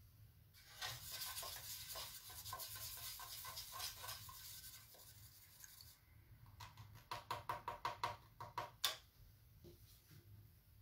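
A bristle paintbrush scrubbed rapidly for about five seconds with a scratchy, rasping sound, then a run of about a dozen quick taps with a slight ring, the last one the loudest.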